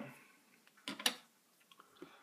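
Two short, faint clicks close together about a second in, otherwise near quiet.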